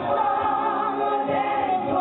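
A woman singing live into a microphone over amplified backing music, holding long sung notes.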